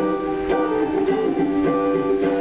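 Small ukulele strummed in a short instrumental passage with no singing.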